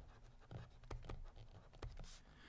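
Faint scratching and a few light taps of a stylus writing a word on a tablet.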